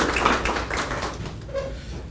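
Light, scattered clapping and tapping that dies away over about a second and a half.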